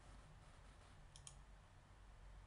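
A single computer mouse-button click, heard as two quick faint ticks (press and release) a little over a second in, over near-silent room tone.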